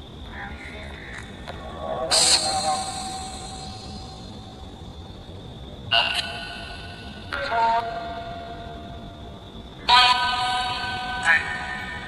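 Necrophonic spirit box app playing from a phone: three sudden bursts of chopped, echoing voice-like fragments, about two, six and ten seconds in, over a faint steady high tone. The investigator takes them for spirit voices saying 'Why would he send her?' and 'Look... he's home?'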